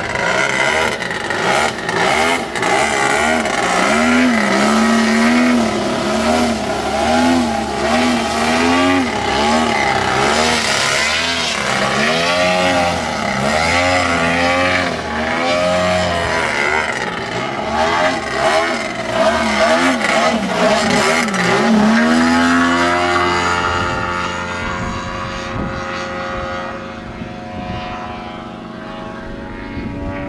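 Desert Aircraft DA-170 two-stroke petrol engine of a 40% scale Yak 55 radio-controlled aerobatic plane, running loud with its pitch swinging up and down again and again as the plane flies aerobatics. About 22 seconds in the pitch rises once more, then drops to a lower, steadier and quieter note.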